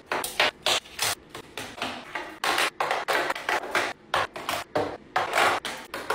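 Makeup brushes, compacts and palettes being set down and arranged in a vanity drawer: a quick, irregular run of clicks, taps and light rattles with a little rubbing between them.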